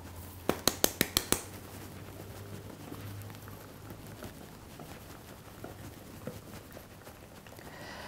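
Flour dredger shaken over a worktop to dust it with flour: a quick run of about seven light taps in the first second and a half, then a low, steady hum under quiet room noise.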